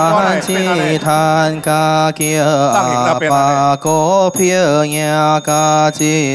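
A man's voice chanting in Buddhist sutra style, long held notes on a few pitches, over steady wooden-fish (muyu) knocks about twice a second.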